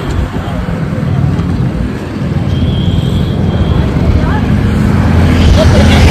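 Road traffic rumble that grows steadily louder toward the end, with faint voices.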